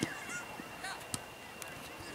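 Football match: a shout trails off at the start, then faint voices and a few short, sharp knocks, the clearest about halfway through, the sound of the ball being kicked.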